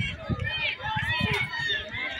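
Spectators chatting, several voices overlapping.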